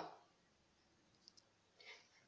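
Near silence: room tone, with two or three faint clicks in the second half.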